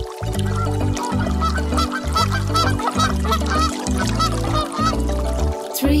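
Cartoon duck quacks, a rapid run of short calls, over a children's-song backing with a steady beat.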